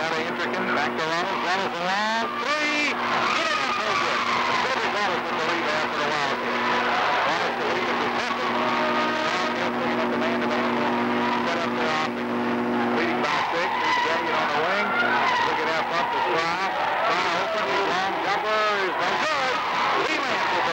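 Basketball sneakers squeaking on a hardwood gym floor in many short chirps, with a basketball bouncing and a crowd's steady background noise and voices. A steady low hum runs underneath and stops about two-thirds of the way through.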